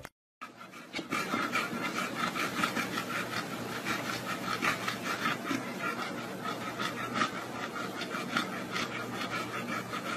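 A dog panting in a quick, even rhythm with its mouth open, starting about half a second in.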